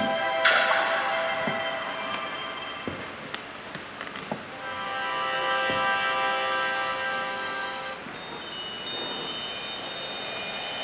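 Short logo jingle in synthesized tones: a bright chiming chord strikes about half a second in and fades over a couple of seconds. A second chord swells in and holds for about three seconds before stopping.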